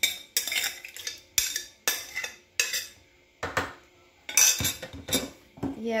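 A metal spoon scraping seasoning juices out of a ceramic bowl: a run of quick scrapes and clinks, a short lull about halfway through, then a few more strokes.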